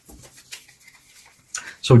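Faint rustling and small clicks of a deck of tarot cards being fanned out in the hands, with a short spoken word near the end.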